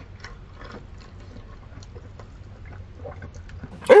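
Someone chewing a mouthful of crispy fried chicken: faint, irregular crackles and mouth sounds over a low steady hum.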